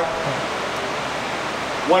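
A steady, even rushing noise, like blowing air, with no distinct events; a voice comes in right at the end.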